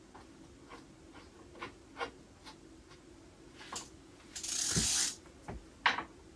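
Hand work on a bicycle: faint light clicks about every half second, a brief rustle a little past four seconds in, and a sharp click just before the end.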